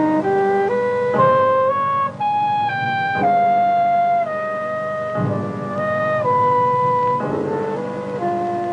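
Film score music. A wind instrument plays a melody that climbs in short steps for about three seconds, then falls back in longer held notes, over low sustained chords.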